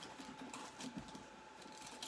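Faint rustling, scraping and light tapping of cardboard as packing boxes are handled inside a large shipping box.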